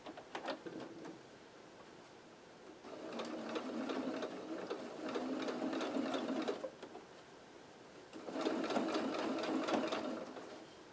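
Electric sewing machine stitching in two runs, one of about four seconds and a shorter one of about two seconds, with a pause between. There are a few light clicks near the start.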